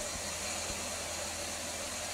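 Steady background hiss with a low hum under it, the noise floor of the voice recording in a pause of the narration; no distinct events.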